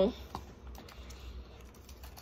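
Faint chewing and small mouth clicks from someone eating a taco, over a low steady hum.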